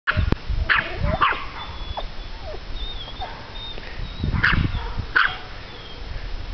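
A dog barking: two short, sharp barks about half a second apart near the start, then two more about four and five seconds in.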